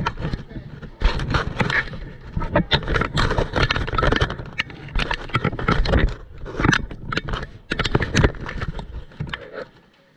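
Close handling noise: the camera scraping, rubbing and bumping against the backstop netting while it is being fixed in place, a dense run of irregular scrapes and knocks with a low rumble that stops near the end.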